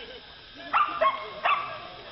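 A dog barking three times in quick succession, short sharp barks.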